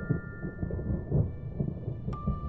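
Low, irregular rumble from the trailer's sound design, thunder-like, under a few high chime tones slowly fading away.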